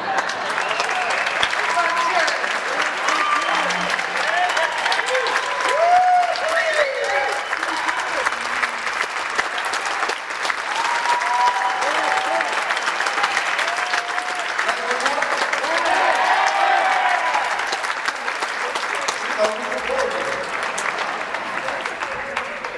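Concert audience applauding steadily, with voices whooping and cheering over the clapping; the applause thins out near the end.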